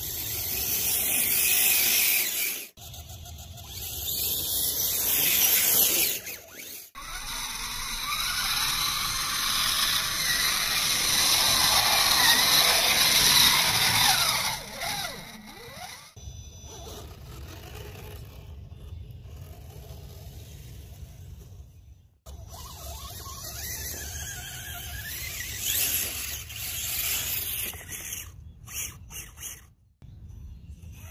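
Radio-controlled scale Chevy S-10 truck's motor and gearing whining at high pitch, rising and falling with the throttle as it drives through mud. The sound cuts off suddenly several times and comes back.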